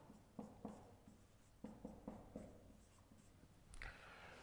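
Faint strokes of a felt-tip marker writing on a white board, several short scratches in quick succession.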